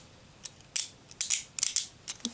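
Small sharp clicks of an assembled Beyblade Burst top's metal disc and plastic layer knocking together as it is handled in the fingers: a couple of single clicks, then a quick cluster in the second half.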